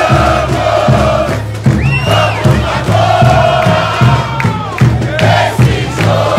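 Football supporters' crowd singing a chant together over a steady, regular drum beat.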